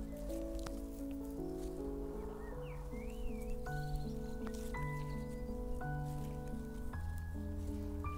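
Gentle background music: soft sustained chords that change roughly once a second, with a deeper bass note coming in near the end.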